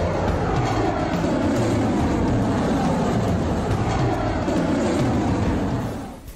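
Rocket engines at liftoff: a loud, steady rumble that fades away near the end.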